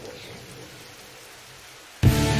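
A faint, steady hiss of noise that slowly fades, with no clear tones or strikes in it.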